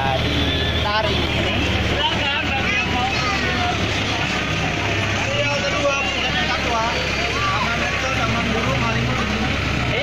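Engine of an open-sided zoo tour vehicle running with a low steady hum, under people's voices talking.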